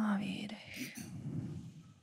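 Soft, breathy female speech into a microphone, close to a whisper: a guided-meditation breathing cue that fades out near the end.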